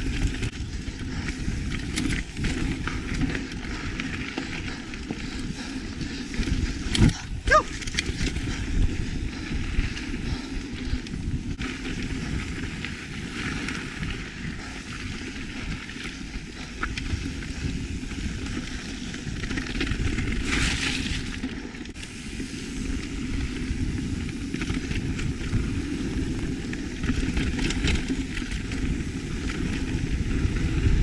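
Mountain bike riding along a dirt singletrack trail, heard from a camera mounted on the bike: a steady rumble of tyres on dirt and the bike rattling over the ground. A couple of sharp knocks come about seven seconds in.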